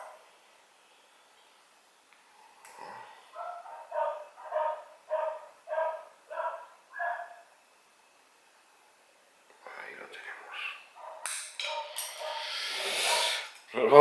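A dog barking, a run of about seven evenly spaced barks, a little under two a second, followed near the end by a few sharp clicks and rustling.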